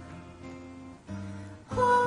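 Acoustic guitar strumming soft chords between sung lines, with a woman's sung note coming in near the end.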